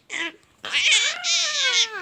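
Infant vocalizing: a short sound, then a long high-pitched squeal that slides down in pitch.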